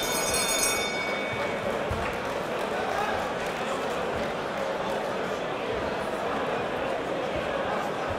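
Boxing ring bell signalling the end of a round, its ringing dying away over the first second or two. It is followed by the steady chatter of a crowd in a large hall.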